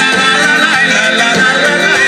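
Live dance band playing an amplified Latin-style dance number, with electric guitars and a saxophone.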